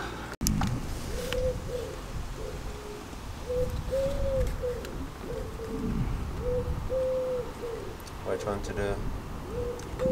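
A pigeon cooing in repeated phrases of soft, low notes, each phrase with one longer drawn-out note, over a low background rumble.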